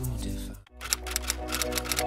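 Background music with a typewriter-key sound effect: a rapid run of sharp clicks starting about a second in, after a brief drop in the music at a cut.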